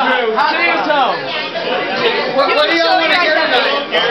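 Speech: several people talking and chatting over one another.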